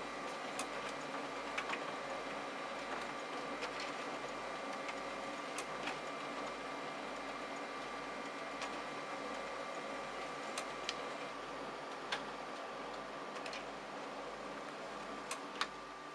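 Konica Minolta magicolor colour laser multifunction printer running a double-sided print job: a steady motor hum with a thin high whine, and irregular light clicks as sheets are fed, turned for the second side and ejected. The highest part of the whine stops about eleven seconds in.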